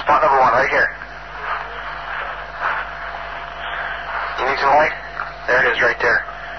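Indistinct men's voices in short phrases on a noisy, low-quality field recording, with steady hiss and hum underneath between the phrases.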